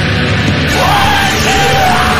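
Heavy metal music with dense distorted guitars and drums, and a held, yelled vocal coming in under a second in.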